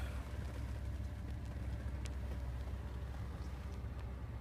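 Pickup truck engine idling, a low steady hum heard from inside the cab, with one faint click about two seconds in.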